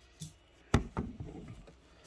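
Handling knocks as a phone is set down on a desk: a light tap, then one sharp knock a little under a second in, followed by a few softer taps and rustling.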